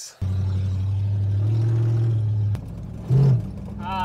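Ford Ranchero driving, heard from inside the cab: a steady low engine and road drone that drops away about two and a half seconds in. A brief loud burst follows, then the drone resumes at a higher pitch.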